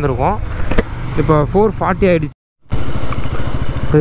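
Motorcycle engine running while riding, a steady low drone under a man's talk. The sound drops out completely for about a third of a second just past the middle, then comes back with the engine as an even, rapid low pulsing.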